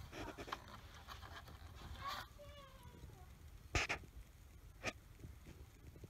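Faint clicks and taps of hands handling rubber hoses and a plastic fuel line in an engine bay, about three separate clicks. A faint, falling squeak comes about halfway through.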